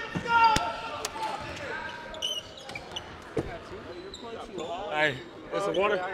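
A basketball bouncing a few sharp times on a hardwood gym floor, amid people talking in a large hall.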